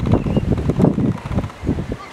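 Wind buffeting the microphone: a loud, irregular low rumble that gusts up and down.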